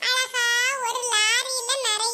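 A high-pitched, pitch-raised cartoon character voice in short phrases, its pitch wavering up and down.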